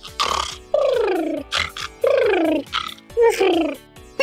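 Comic cartoon-style snoring: a snorting breath in, then three downward-sliding whistling breaths out, about a second apart.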